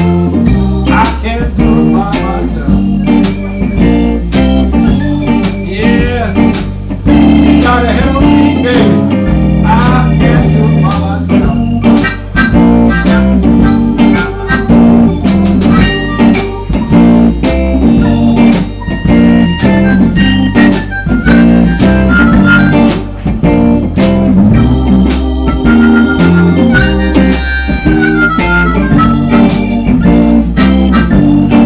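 Live blues band playing: a harmonica solo, played cupped against the vocal microphone with bent notes, over electric keyboard, drums, bass and electric guitar.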